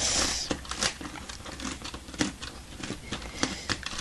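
LEGO Technic plastic gears turned by hand, clicking irregularly as the long gear train works through the turntable: teeth not meshing cleanly.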